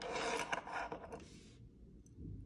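Gold chain being handled: the links slide and rub against each other through the fingers, a dry rasping rustle with small clicks that dies away after about a second and a half.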